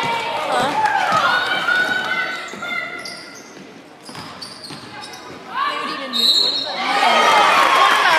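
Basketball game sound in a gymnasium: a basketball bouncing on the hardwood court amid players' and spectators' voices. It goes quieter for a couple of seconds in the middle, then picks up again.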